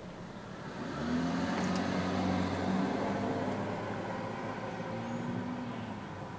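Low hum of a motor vehicle's engine, swelling about a second in and then fading, with a weaker rise again near the end.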